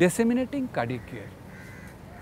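A man's voice in the first second, then a crow cawing faintly in the background.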